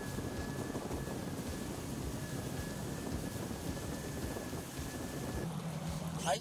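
Bass boat running at speed with its outboard engine under the wind buffeting the microphone and the rushing water, an even, steady noise. Just before the end it changes to a lower steady hum.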